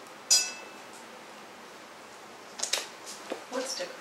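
Box-set packaging being handled: one short, sharp crackle with a brief ring about a third of a second in, then a few softer handling sounds later on.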